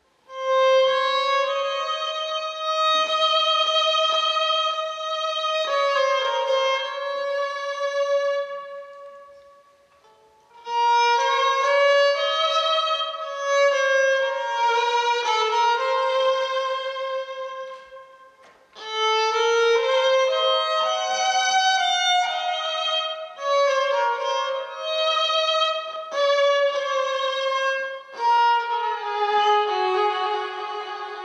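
Electric violin playing a solo melody line of held notes, in three phrases with short breaks about ten and about eighteen seconds in.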